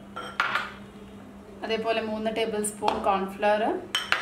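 Bowls clinking and knocking as they are handled and set down while flour is tipped into a mixing bowl, with a sharp clink about half a second in and another near the end. A voice speaks briefly in the middle.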